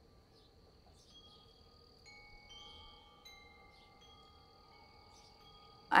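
Quiet chime tones at several pitches, each ringing on for seconds, with new, higher notes entering about two, two and a half and three seconds in.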